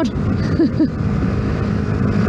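Yamaha MT-125's single-cylinder engine running steadily at road speed, heard under heavy wind rush on a helmet-mounted action camera.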